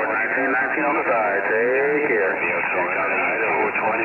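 Voices received over a CB radio on 27.375 MHz lower sideband, talking on throughout, band-limited with nothing above a narrow voice band.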